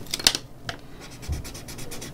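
Graphite pencil scratching across paper in short shading strokes, the loudest about a quarter second in, then a fainter steady rubbing.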